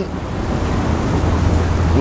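Wind buffeting the microphone with a steady low rumble, over an even rush of water.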